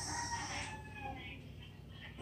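A rooster crowing faintly, one drawn-out call that falls slightly in pitch, with a high hiss fading out in the first half second.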